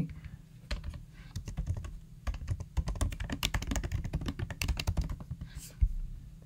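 Typing on a computer keyboard: a quick run of key clicks entering a short SQL query, ending with one louder key strike near the end.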